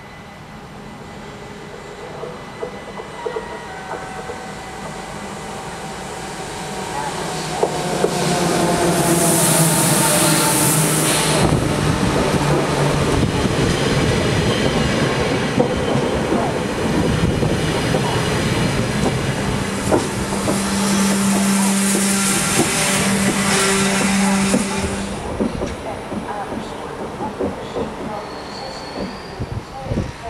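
NS double-deck electric passenger train passing close by. It grows louder from about six seconds in and runs past loudly for some seventeen seconds with a steady low hum and two spells of high hiss, then fades away.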